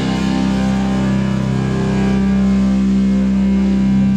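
Live rock band's electric guitar holding one sustained chord that rings steadily, with no drums playing.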